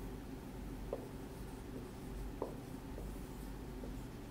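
Dry-erase marker writing on a whiteboard, faint, with two short squeaks of the tip, about a second in and again past two seconds.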